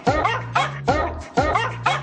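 Dog-bark remix: a single sampled dog bark, pitch-shifted to play a pop tune's melody, repeats about four times a second over a synthesized bass line.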